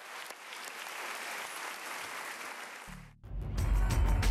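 Crowd applauding for about three seconds. The sound then cuts off briefly, and loud music with heavy bass starts just after three seconds in.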